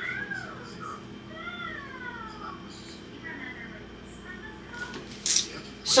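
Faint, high-pitched voice-like calls, each sliding down in pitch, about three of them in the first few seconds.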